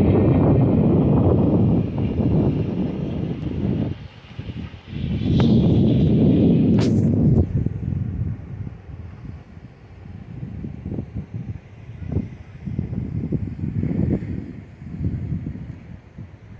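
Wind buffeting the microphone as a low rumble that comes in gusts, heaviest in the first half. A single sharp click comes about seven seconds in.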